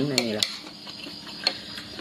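A metal spoon clinking against a plate of rice: a couple of sharp clicks right at the start and one more about one and a half seconds in.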